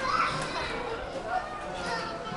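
Children's voices: playful calls and chatter, with a high-pitched call just after the start.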